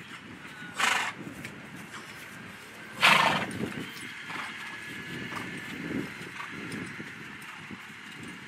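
Show-jumping horse cantering on grass: soft, regular hoofbeats, with two loud, short snorts from the horse about one and three seconds in, the second the louder.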